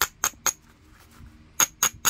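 Coarse abrading stone rubbed in quick short strokes along the edge of a heat-treated Mississippi gravel flint preform, about four scrapes a second. There are three at the start, a pause of about a second, then two more near the end.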